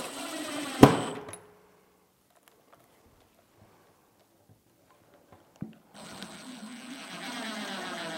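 Cordless Makita driver spinning screws into a drawer bracket. A run of motor whir ends about a second in with one sharp snap. After a few seconds of quiet, a second run of whirring starts about six seconds in.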